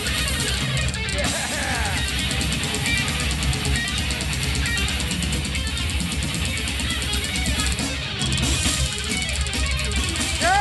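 Death metal band playing live: heavily distorted electric guitars and bass over fast, dense drumming, loud and unbroken, heard from within the crowd through a camera's microphone.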